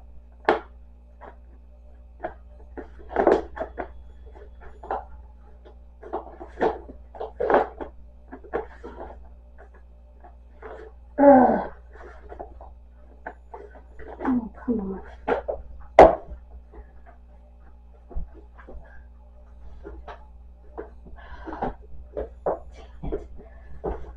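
Plastic food container and its lid being handled and fitted, with scattered clicks, knocks and rustling and one sharp snap about sixteen seconds in, over a steady low hum.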